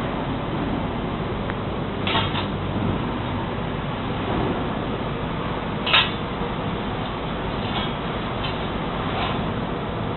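Steady machinery noise with a few short metallic clinks, the sharpest about six seconds in, as a steel straightedge is laid against a large circular saw blade to check its tension and flatness.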